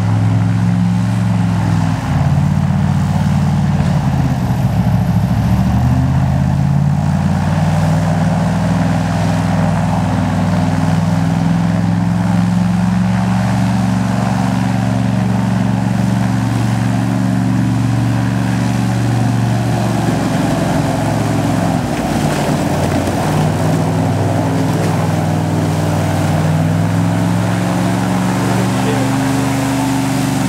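Airboat's engine and caged air propeller running steadily at close range, its pitch shifting a few times as the engine speed changes.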